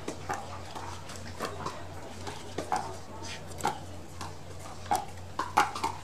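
Pickleball paddles hitting the hard plastic ball back and forth in a rally: a string of sharp pops, irregularly spaced, about one to two a second, over a low steady hum.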